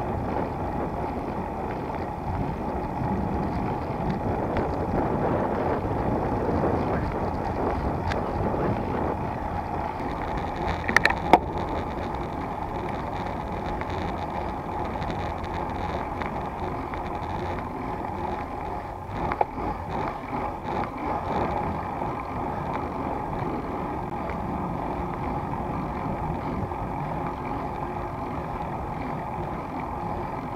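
Steady rushing wind noise on the microphone of a camera riding on a moving road bike, mixed with tyre hum on asphalt. Two sharp clicks come about a third of the way through.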